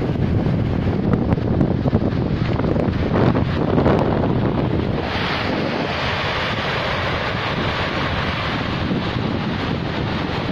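Strong wind buffeting the microphone over the steady sound of surf on a pebble beach. About five seconds in, a brighter hiss of waves washing up the shore comes to the fore.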